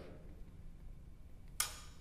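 Quiet room tone with a low steady hum, broken near the end by one short, sharp hiss.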